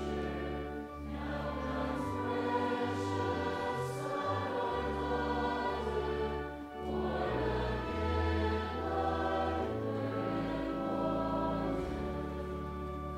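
A church hymn: voices singing with sustained organ accompaniment. The phrases break briefly about a second in and again just before seven seconds.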